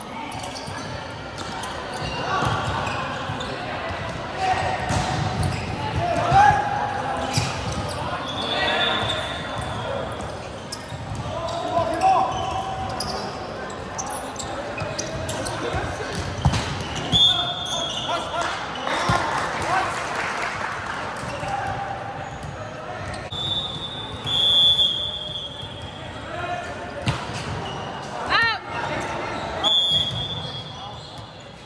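Indoor volleyball rally: the ball is struck again and again, with sharp knocks, while sneakers squeak briefly on the court floor several times and players shout, all echoing in a large sports hall.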